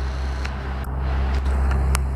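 Road traffic rumbling steadily, with a few light clicks.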